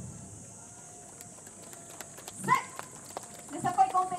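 Outdoor lull just after the dance music stops: a few faint scattered clicks and taps, a short call about two and a half seconds in, then high voices calling out near the end.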